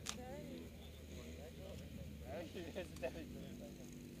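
Faint voices of nearby spectators chatting, over a low steady rumble from the drag cars idling at the start line. A sharp click right at the start.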